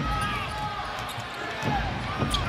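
Live NBA game sound on the court: a basketball bouncing on the hardwood floor over the arena's steady crowd noise, with a few short squeaks.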